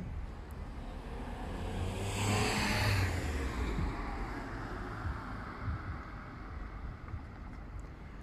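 A car driving past, its engine and tyre noise swelling to a peak about two to three seconds in with a falling pitch, then fading away over a steady low rumble.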